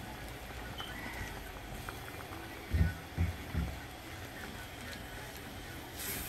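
Cream and cheese sauce simmering in a frying pan while a silicone spatula stirs it, a faint steady bubbling. Three short low sounds come in quick succession about three seconds in.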